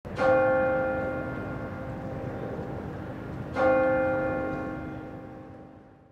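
Two struck bell-like chimes as an outro audio logo: the first just after the start, the second about three and a half seconds later. Each rings with several overtones and fades slowly.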